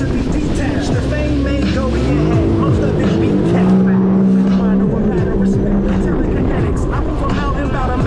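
Sea-Doo RXT-X 300 personal watercraft engine revving, climbing in pitch about two seconds in and holding steady for a couple of seconds before the throttle comes off and the pitch falls, over the rush of water and spray.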